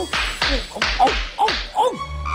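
A cartoon genie sneezing over and over in quick succession: about four sneezes in two seconds, each a short voiced 'ah' followed by a burst of breath. The sneezes are a sign of the genie's sneezing sickness.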